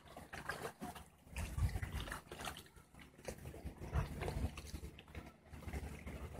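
Irregular low rumbling and buffeting on the microphone, swelling twice, with a few faint clicks.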